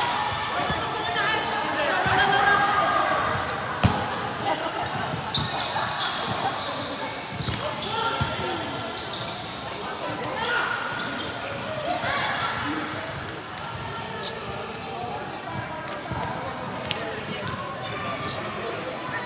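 Volleyball rally in a large sports hall: the ball is struck several times, with sharp impacts, the loudest about fourteen seconds in. Players' voices call out over the hall's echo.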